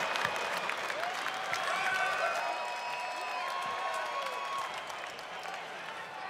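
Arena crowd applauding and cheering after a big move, the noise slowly dying down, with a few single voices holding long shouts above it.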